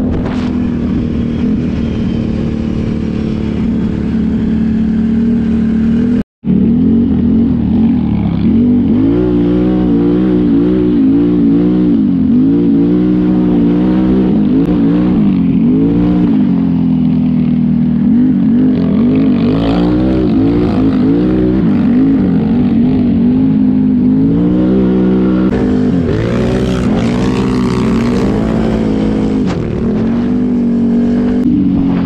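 Can-Am Renegade XMR 1000R's Rotax V-twin engine with an MPP exhaust, heard from the rider's seat. It runs at a steady cruise, then after a short break about six seconds in it revs up and down again and again as the throttle is worked.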